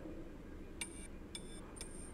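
Early wireless telegraph receiver clicking: three short, sharp ticks about half a second apart, each with a thin high ring. They are the incoming transatlantic signal, the three dots of the Morse letter S.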